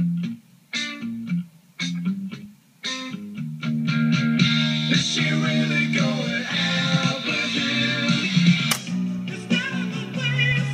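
Guitar-led rock music playing from a pre-recorded 8-track tape on a Pioneer H-R99 deck, choppy with short gaps for the first few seconds, then steady. Near the end comes a sharp click as the deck switches to the next program, and a different song starts.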